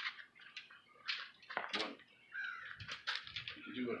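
Scattered faint crinkles and clicks of aluminium foil handled under gloved hands rubbing a mustard-coated pork butt, with brief fragments of voices.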